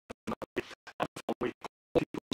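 A man's speech chopped into rapid short fragments by audio dropouts: clipped bits of syllables about seven times a second, each cut off sharply into dead silence, so the talk stutters and cannot be understood.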